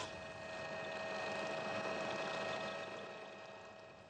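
Firefighting helicopter hovering low over water to fill its suspended bucket: a steady engine whine over the hiss of rotor wash on the water, fading away near the end.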